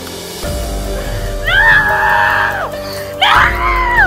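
A woman wailing in grief, two long high cries that each fall in pitch at the end, over background music with sustained notes.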